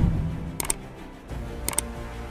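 Two quick mouse-click sound effects, each a sharp double click, about a second apart, over low background music.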